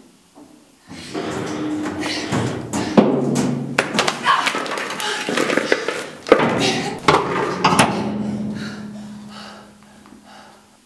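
Repeated banging and thumping on the bolted metal door of a mine rescue chamber, with a person's voice over it. It starts about a second in, is loudest through the middle, and fades near the end.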